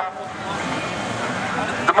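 Four-cylinder autocross race cars running on the start grid, a steady, even engine noise with no single clear pitch.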